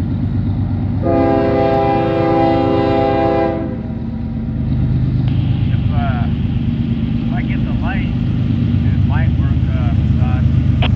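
Union Pacific diesel freight locomotives approaching, their engines running with a steady low rumble that grows slightly louder. About a second in the lead unit sounds one long multi-tone horn blast lasting about two and a half seconds.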